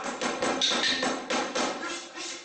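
A quick, irregular run of sharp knocks, about seven in two seconds, with a bright ringing tone over some of them: percussion during a temple spirit-descent rite.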